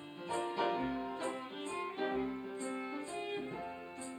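A waltz played live on fiddle with hand-drum and tambourine accompaniment. A low drum thump falls about once a bar, and tambourine jingles sound on the beats.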